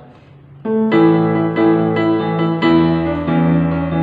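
Yamaha portable keyboard on a piano voice playing the verse melody of a slow worship song. After a short pause it starts about two-thirds of a second in, with single notes struck about every half second over sustained low notes.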